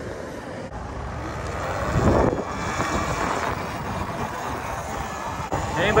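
Road traffic and wind rushing over the microphone while riding an electric bike beside a busy road; a vehicle passes with a swell of noise about two seconds in, then a steady rush.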